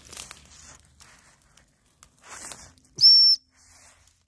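Dry reeds and grass rustle and crackle as they are pushed through. About three seconds in comes a single short, high, steady whistle, much louder than the rustling.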